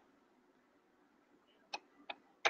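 Near silence: quiet room tone, broken by one short, sharp click near the end.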